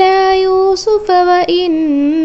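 A female voice reciting the Quran in Arabic in a melodic tajweed chant, holding long steady notes. There is a brief pause for breath about a second in, and the pitch steps down near the end.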